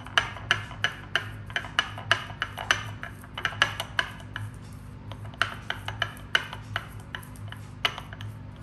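Small plastic toothbrush scraping and rubbing baking soda against a ceramic saucer in short, even strokes, about three a second, with a brief pause about halfway.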